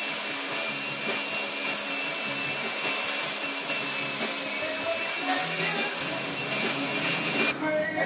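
Road bike spinning on an indoor trainer: a steady high whine from the roller and resistance unit that cuts off shortly before the end.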